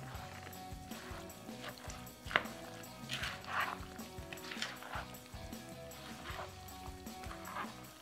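Soft background music with held notes, under the wet squish and scrape of a spoon stirring chunky salsa in a plastic bowl. A single sharp click about two and a half seconds in.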